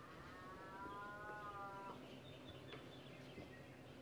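A faint, long drawn-out call of steady pitch that ends about two seconds in, followed by a few soft ticks in otherwise quiet surroundings.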